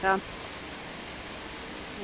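Steady rush of water pouring over a river weir, an even noise with nothing else standing out.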